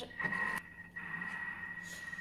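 A steady high-pitched electronic tone, one unbroken pitch held for a few seconds.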